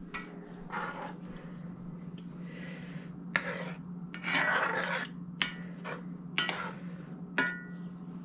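A metal spoon scraping and knocking against a cast iron skillet in irregular strokes, stirring and spreading out cooking meat in a thick sauce. A steady low hum runs underneath.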